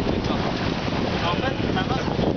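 Wind buffeting the microphone and water rushing past the hull of a sailing yacht under way in a choppy sea, a loud, steady rush of noise.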